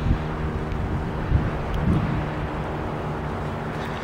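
Wind on the microphone, a steady rushing noise, with a faint steady low hum underneath.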